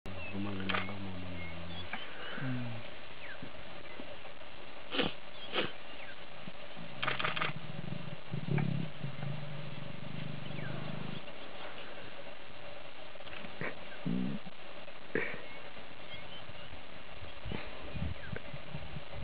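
African lion vocalizing with low, drawn-out growling moans: one at the start lasting about two seconds, a short one soon after, and a longer one of about four seconds midway. A few sharp clicks fall between the calls, over a steady background hum.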